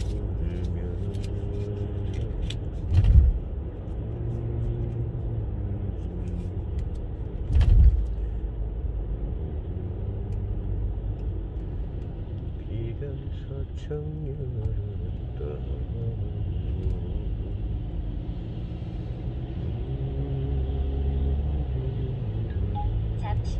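Steady road and engine noise inside a car's cabin while driving on a wet road, with two short loud thumps about three and eight seconds in.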